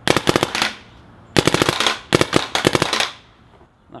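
Paintball marker firing rapid strings of shots, about 15 balls per second, fed by a Bunker Kings CTRL hopper: three short bursts, each about a second or less. The hopper keeps up with the rate of fire.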